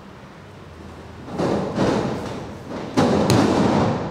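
Wrestlers hitting the canvas of a wrestling ring: a heavy thud about a second and a half in, then a sharper, louder slam about three seconds in as a wrestler is taken down onto the mat.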